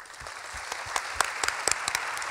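Applause that builds over the first half second and then holds steady, with a few louder single claps standing out.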